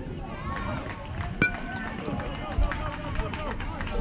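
Several spectators' voices calling out at once during a youth baseball play, with one sharp knock about a second and a half in.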